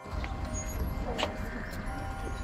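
Outdoor ambience: a steady low rumble with faint, distant voices of a gathered crowd.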